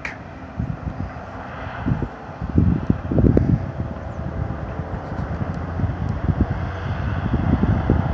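Wind buffeting the microphone in irregular gusts, strongest from about two and a half to three and a half seconds in, over a steady low outdoor rumble.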